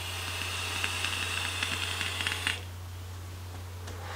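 Tauren RDA on a mechanical mod fired into 0.15-ohm Alien coils during a long draw: a steady hiss of air through the airflow with scattered crackles of e-liquid sizzling on the hot coils, stopping after about two and a half seconds.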